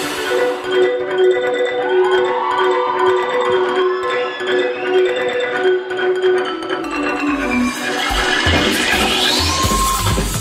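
Dance-routine music played over the sound system: a repeating figure of short pitched notes, about two a second, then near the end a rising sweep and a heavy bass beat come in.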